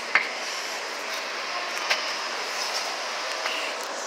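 Steady background hiss of a busy indoor room, even and unbroken, with no single sound standing out.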